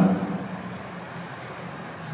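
A man's speech trails off at the very start, then a steady, even background noise with no distinct events fills the pause.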